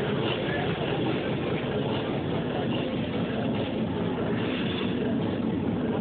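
Hard techno played loudly over a nightclub sound system, a dense, dull wash as picked up by a small camera's microphone, with crowd voices mixed in.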